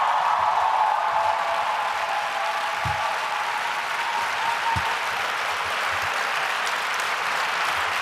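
A large audience applauding, a dense and steady clapping that holds without a break.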